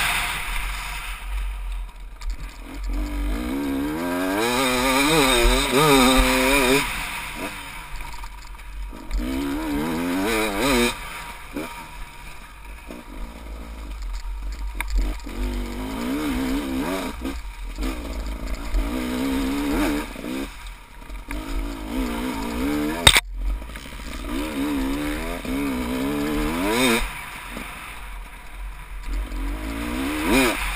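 Dirt bike engine revving up and falling back again and again, with short gaps where the throttle is shut, over constant wind rumble on the microphone. One sharp knock about three-quarters of the way through.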